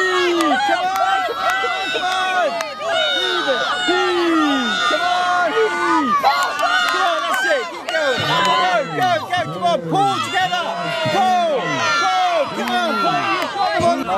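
Crowd of spectators, many of them children, shouting and cheering encouragement to a tug-of-war team, with many high voices overlapping. About halfway through, a deeper man's voice joins in with a run of short repeated shouts.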